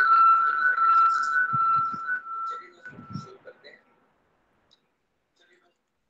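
Audio from an embedded online video playing through a screen-share on a video call: a steady, high whistle-like tone with faint sounds beneath it. It fades out about three and a half seconds in, as the video is paused, leaving near silence.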